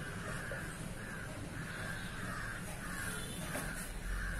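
Crows cawing in a quiet, steady series of harsh calls, roughly two a second.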